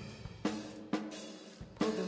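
Background music: a few drum-kit hits with cymbal crashes, about half a second apart, over a held low note.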